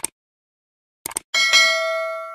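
Subscribe-button animation sound effect: a mouse-style click at the start and a quick double click just after a second in, then a single bell ding that rings on with several overtones and slowly fades.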